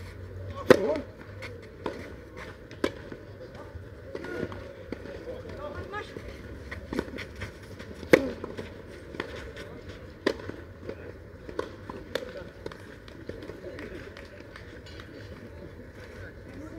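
Tennis balls struck by rackets during doubles points on a clay court: a series of sharp hits, the loudest about a second in as a serve is hit and again about eight seconds in at the next serve.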